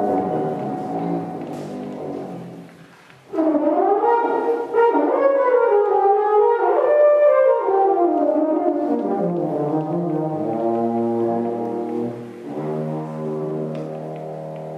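French horn playing a jazz solo line over piano and double bass. The music drops away briefly about three seconds in. The horn then comes back loud with a phrase of bending, sliding notes, and settles onto lower held notes near the end.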